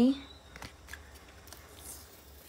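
Faint clicks and light rustling of a photocard in a hard plastic toploader being handled and moved.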